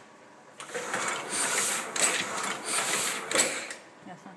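Vintage printing press with an automatic sheet feeder running and printing, a rhythmic mechanical clatter with a sharp stroke every half second or so. It starts about half a second in and stops shortly before the end.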